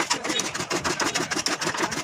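A motor-driven machine running with a fast, even clatter of about eight strokes a second.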